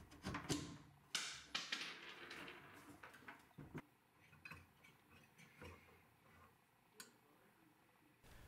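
Faint handling noises of a wooden glass-paned bookcase door and its small metal dowel: a short scrape and rustle about a second in, then scattered light clicks and knocks, with a sharp click near seven seconds.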